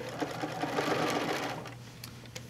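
Sewing machine running, stitching along a quilt's folded-over binding, then slowing and stopping near the end.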